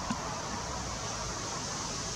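Steady outdoor background noise, an even hiss, with one faint click just after the start.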